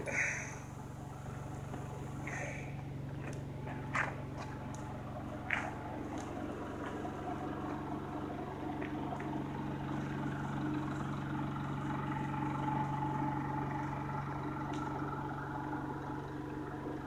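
A steady, low engine hum at an even pitch, like a motor idling, with a couple of faint sharp clicks a few seconds in.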